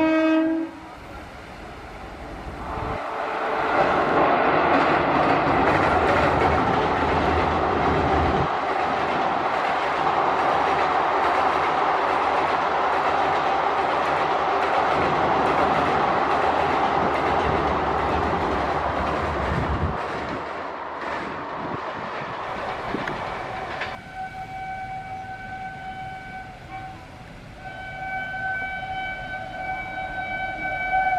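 Passenger coaches of an Indian Railways express behind a WAP-7 electric locomotive running across a steel girder bridge: a loud, steady rumble and clatter that builds over the first few seconds, holds for about twenty seconds, then drops away. Near the end a train horn sounds two long blasts.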